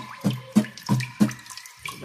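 Acoustic guitar strummed with downstrokes only, about three strums a second, in a march-time strumming pattern, each chord ringing briefly. The strums grow softer toward the end.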